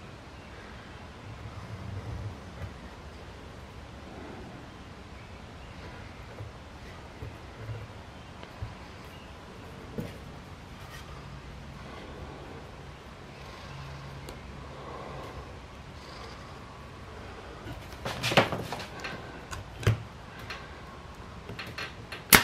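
Wooden boards handled by hand on a workbench: quiet scrapes and a few light knocks as a glued side piece is set in place, then a cluster of louder knocks and scrapes near the end, over a steady low hum.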